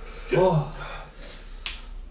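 A man's short pained groan about half a second in, from the burn of a Carolina Reaper chilli, then a single sharp click near the end.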